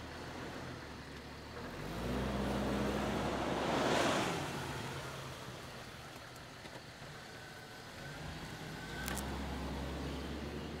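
A truck drives past at night. Its engine and tyre noise swell to a peak about four seconds in, the engine note dropping in pitch as it goes by, then fade, before an engine rises again near the end.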